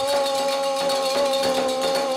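Kagura accompaniment: one long held note, wavering slightly and sinking a little in pitch, over light metallic percussion from the ensemble's hand cymbals and drum.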